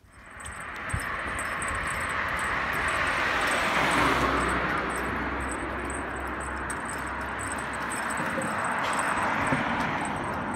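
Road traffic noise, a steady rush of passing vehicles that is strongest about four seconds in and swells again near the end.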